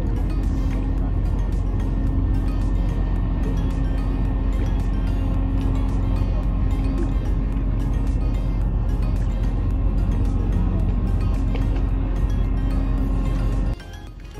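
Background music over a loud, steady low rumble that cuts off suddenly just before the end.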